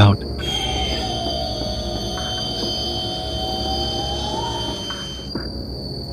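Dark ambient horror background music: a sustained drone over a low rumble, with a held mid tone that bends upward a little near the end and thin steady high tones above.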